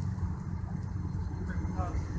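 Steady low background rumble, with a faint voice starting just before the end.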